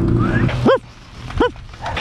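A dog gives two short, high barks about two-thirds of a second apart. Under them is a low rumble that drops away at the first bark.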